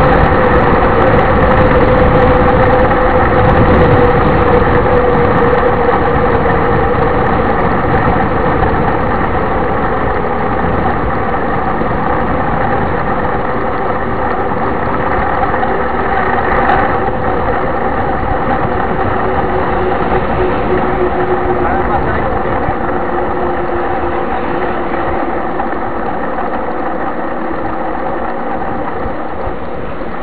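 Mountain bike rolling on asphalt, heard from a camera mounted on the bike: a loud, steady rolling noise with the hum of knobby tyres, its pitch drifting slowly as the speed changes.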